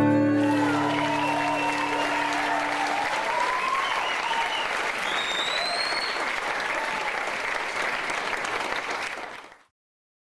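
An audience applauds and cheers, with a couple of whistles about five to six seconds in, while the last strummed acoustic guitar chord rings out over the first few seconds. The applause fades out shortly before the end.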